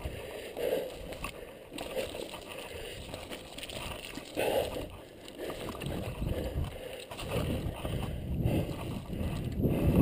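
Mountain bike tyres rolling fast over a dirt singletrack, an uneven rumbling noise that grows louder in the last few seconds.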